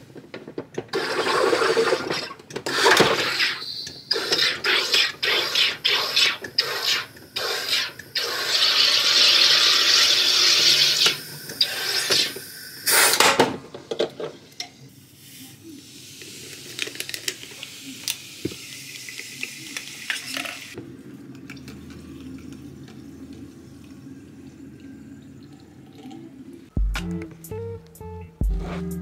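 Countertop soda maker carbonating a bottle of water: a series of loud hissing bursts of CO2 as the top is pressed down, one of them long, ending in a sharp click. A softer, longer hiss follows as the bottle is tilted out, and guitar music comes in near the end.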